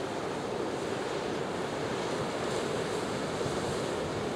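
Sea waves washing steadily on a rocky shore.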